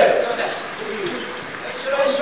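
Players' voices calling out across a futsal court, with one drawn-out shout at the start that fades, then a quieter stretch of distant calls.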